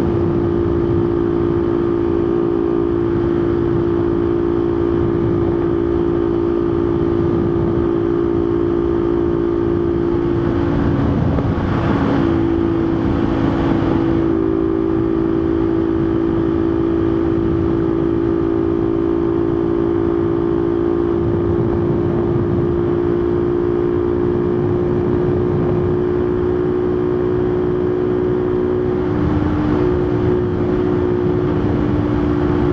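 Motorcycle engine, a 250 bored out to 288 cc with an oversized carburettor, cruising steadily at highway speed during its break-in, with wind rumbling on the microphone. About twelve seconds in, the engine note dips briefly under a swell of rushing noise, then settles again. The engine is running somewhat rich, which the rider feels is costing a little power.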